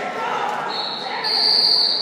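A long, high, steady signal tone, like a whistle blast, sounds over the hall's chatter. It starts just before a second in and steps up a little in pitch partway through.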